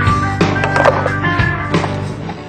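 Music with a steady low bass line, over a freestyle skateboard clacking several times as its tail and wheels strike the hard riding surface.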